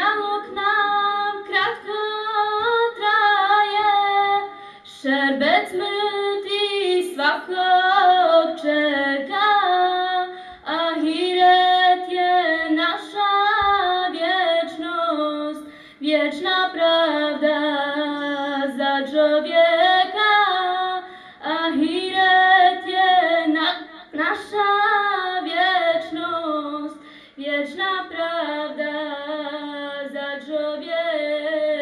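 A woman's solo unaccompanied Islamic religious chant, sung in long ornamented phrases of a few seconds each with short breaths between them.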